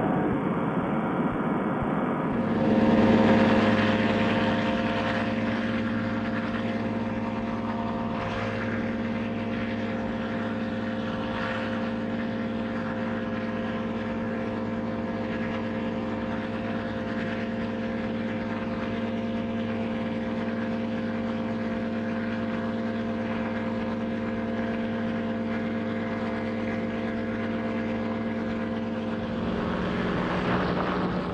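Paramotor trike's engine and propeller running in flight just after takeoff: a steady, even drone that swells about three seconds in and then holds at one pitch.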